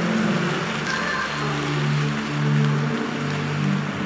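A large congregation praying aloud all at once, a dense wash of many voices. Low sustained organ chords come in about a second in and change a couple of times.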